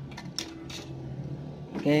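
A few light clicks and taps as a small kit circuit board with freshly fitted parts is handled and set down on the workbench, over a steady low hum. A man says "Okay" near the end.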